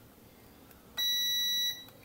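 Digital multimeter's continuity beeper giving one steady, high-pitched beep, lasting a little under a second and starting about a second in, the meter's signal of a low-resistance path between its probes.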